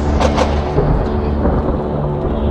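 Deep low rumble of explosions over background music with steady sustained tones, with a few short knocks near the start.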